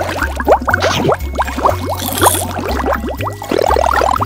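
A dense cartoon bubbling sound effect of many quick rising blips, over background music with a steady bass line.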